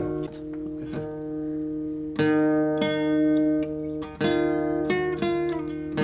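Acoustic guitar chords played one after another, each struck sharply and left to ring: about five or six chords, the loudest about two and four seconds in.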